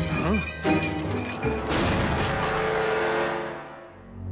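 Cartoon soundtrack: music with a short wavering yelp near the start, then a loud crash about a second and a half in that rings and fades away.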